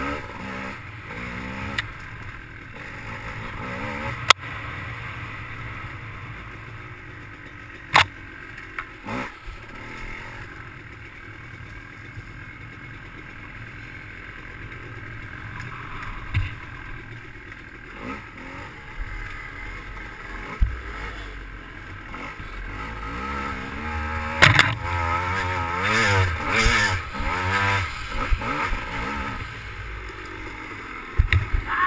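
Dirt bike engine running on a wooded trail ride, its pitch rising and falling with the throttle, and revving hardest near the end. Several sharp knocks come from the bike over bumps.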